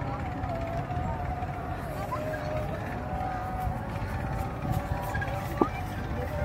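A faraway voice holding long, slightly wavering notes over a steady low rumble, with a brief knock near the end.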